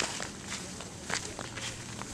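Cattle hooves and a man's footsteps on a gravel dirt track: irregular steps and knocks.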